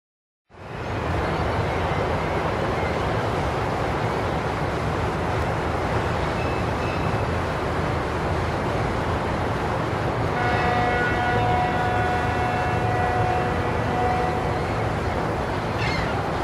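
Loud, steady, deep noise like a running vehicle, with a horn of several notes sounding together for about five seconds from about ten seconds in.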